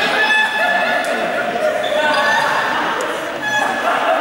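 Overlapping shouts and calls from a group of players, with a ball bouncing on the court floor, echoing in a large sports hall.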